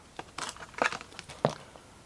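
2021-22 Prizm basketball trading cards being handled and flipped through by hand: about half a dozen short, quick rustles and flicks of card against card in the first second and a half.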